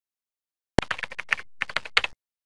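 Computer keyboard typing: a rapid run of keystrokes starting just under a second in, a brief pause, then a second short run.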